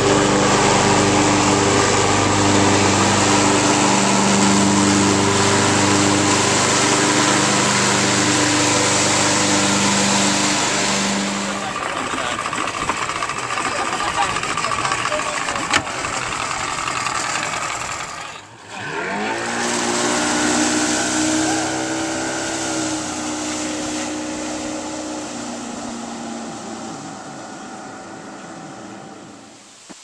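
An engine runs steadily with a pitched hum for the first dozen seconds, then the sound turns rougher and noisier. About 18 seconds in the sound cuts out briefly, then an engine revs up with rising pitch and slowly fades near the end.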